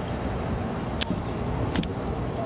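Steady low outdoor rumble, with a sharp click about a second in and a quick double click near the end.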